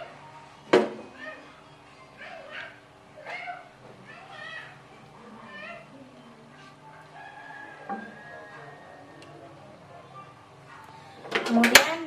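Faint voices talking in the background, with a sharp click about a second in and a loud burst of clattering knocks near the end.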